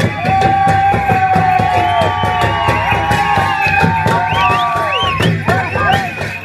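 Traditional Newari drum and cymbal music beating steadily for a Lakhe dance, with a crowd cheering over it in long drawn-out calls that break off about five seconds in.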